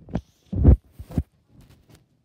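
Handling noise from a phone being grabbed and swung around close to its microphone: four dull thumps in just over a second, the loudest about half a second in, then a few faint ticks.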